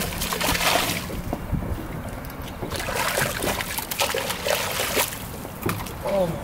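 Hooked bluefish thrashing at the water's surface as it is reeled in, making splashes about a second long at the start and again from the middle to near the end.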